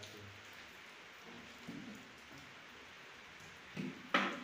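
Faint, steady soft rustling of hands rubbing and crumbling a gulab jamun mixture worked with ghee in a large steel tray.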